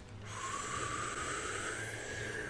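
A quiet, long breath through the nose: a steady hiss with a faint tone that rises slightly, lasting about two seconds.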